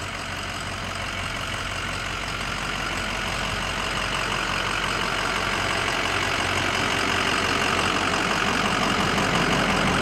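Ford 6.0 L Power Stroke turbo-diesel V8 of a 2006 F-250 idling steadily, gradually growing louder.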